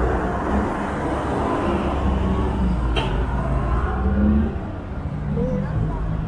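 City street traffic: the engines of cars and a bus running with a steady low rumble, with one sharp click about halfway through.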